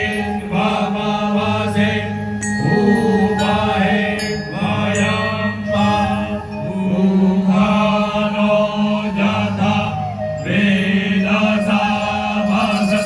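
Brahmin priests chanting Vedic Sanskrit mantras into microphones, several male voices together in phrases of a few seconds each, over a steady low drone.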